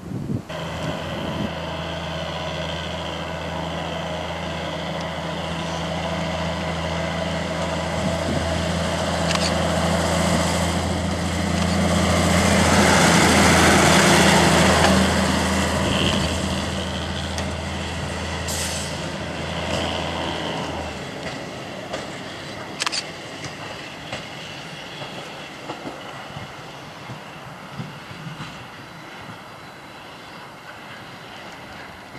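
ČD class 810 diesel railbus pulling away and running past, its engine giving a steady low drone that is loudest about halfway through and drops out about two-thirds of the way in. A few sharp clicks follow as it rolls off into the distance, fading.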